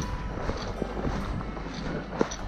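Walking footfalls through dry prairie grass and brush: irregular soft thuds a few tenths of a second apart, over a steady low rumble of wind on the microphone.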